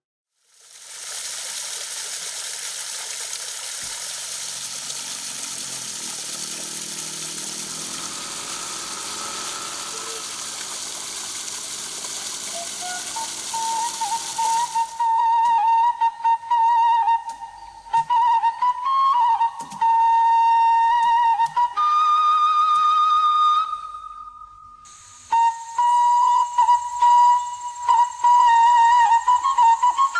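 A steady hiss fills the first half. Then a solo flute plays a slow, ornamented background melody with short pauses between phrases.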